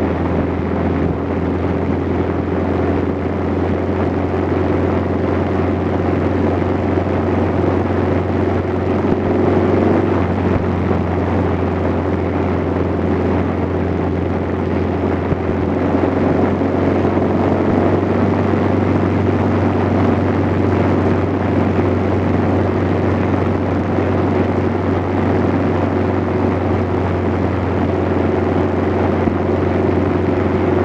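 Steady running of a vehicle's engine with road and wind noise while driving, a constant low hum under it; slightly louder about halfway through as an oncoming car passes.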